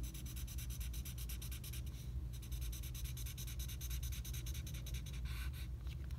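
Black felt-tip marker scribbling back and forth on paper in quick, even strokes, shading an area solid black. The strokes break briefly about two seconds in and stop just before the end.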